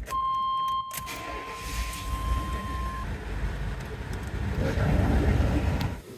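1994 Chevy K1500 pickup running with a steady low rumble. A steady high beep sounds for under a second at the start, then fades away.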